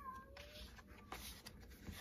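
Faint rustles and light taps of stiff paper flashcards being handled and fanned. Near the start comes a short, faint high cry that glides in pitch.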